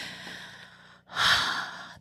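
A woman breathing into a close microphone: a fading exhale, then a louder, quick intake of breath about a second in.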